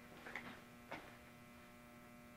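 Near silence: room tone with a steady electrical hum and a few faint ticks about a third of a second and about a second in.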